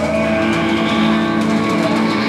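Live rock band's electric guitars and bass holding one sustained, distorted chord that rings out steadily without a beat, as a song ends.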